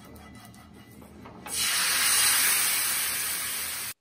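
Light brushing scrapes on a hot cast-iron pan, then a loud, steady sizzle starts suddenly about a second and a half in and cuts off abruptly just before the end.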